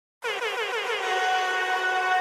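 Opening effect of a music track: a synthesized horn-like tone that starts after a moment of silence. It comes in quick falling stutters, about eight a second, then settles about a second in into one held steady note.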